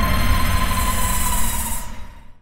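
Dramatic sound-effect sting marking the end of a scene: a sudden hit that rings on as a low rumble with a hissing high swell and a held tone, fading away near the end.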